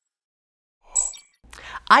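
Silence, then a brief airy sound effect with a thin high ring about a second in, from the animated logo sting. Near the end a low room hum comes in and a man starts to speak.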